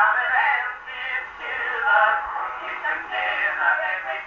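Early acoustic recording of a comic male vocal duet with band accompaniment, an Edison Diamond Disc playing through the horn of a Victor III gramophone. The sound is thin and mid-range, with almost no bass.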